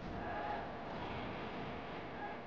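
A brief high-pitched call from a voice, like a cheer, about half a second in, over the steady murmur of a gym hall.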